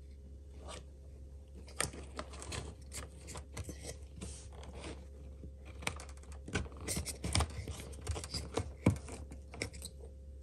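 Hands handling a black plastic headlight housing and its wiring connectors: irregular light clicks, scrapes and rustles of plastic and wire, over a steady low hum.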